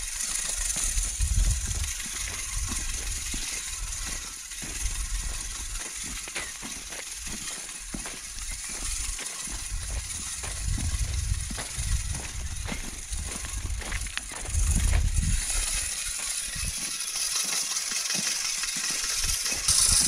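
Hand-cranked cyclone bag seeder whirring as it broadcasts wheat seed, a steady hiss, over light footsteps on tilled soil. A few low rumbles come and go.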